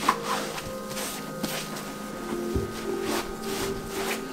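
A cloth wiping down a leather-and-rubber sneaker, with soft rubbing strokes and a small click near the start. Faint background music plays underneath.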